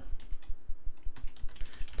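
Typing on a computer keyboard: a quick run of keystrokes, several a second.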